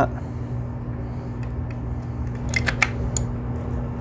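Plastic housing halves of a Ryobi P737 cordless air compressor being handled and pressed together, giving a few light plastic clicks and knocks about two and a half to three seconds in, over a steady low hum.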